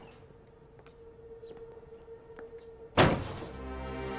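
A wooden door shut with a single loud thud about three seconds in, after a stretch of faint room tone. Background music with sustained notes starts with the thud.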